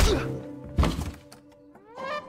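Two heavy thuds, one at the start and one just under a second in, as a man is knocked down onto a wooden floor, over dramatic film-score music that ends in a quick rising sweep.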